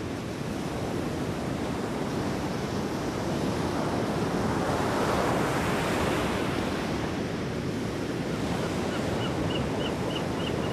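Ocean surf: a steady rush of waves that swells to a peak about halfway through and then eases. A run of short high chirps comes in near the end.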